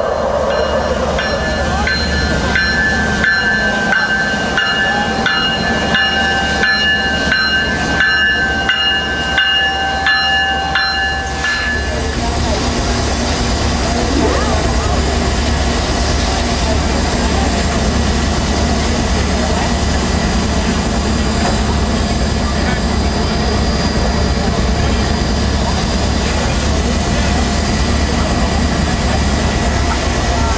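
For about the first twelve seconds, an intro jingle of steady electronic tones over a regular clicking beat. Then comes the steady hiss and low rumble of Santa Fe 4-8-4 steam locomotive No. 3751 standing under steam, with steam venting from a fitting on top of the boiler and crowd voices mixed in.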